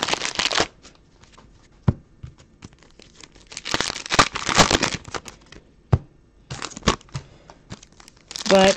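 Foil trading-card pack wrappers being torn open and crinkled by hand, in three bursts of tearing and rustling with a few sharp taps between them.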